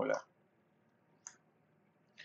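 A single sharp click of a computer keyboard key, about a second in, against near silence. The tail of a spoken word is heard at the very start.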